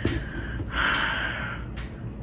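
A man's breathy exhale, like a gasp or sigh, lasting about a second from just before the middle, followed by a faint click.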